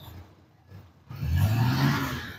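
A vehicle engine, heard a second in, rising a little in pitch and then falling away over about a second and a half.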